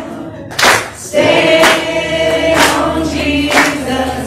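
A small group singing together, with hand claps on the beat about once a second; the voices hold one long chord from just over a second in until near the end.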